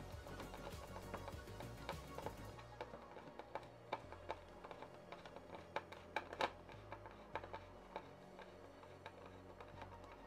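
Faint background music, with scattered small irregular clicks and ticks from a screwdriver turning a screw into a plastic enclosure.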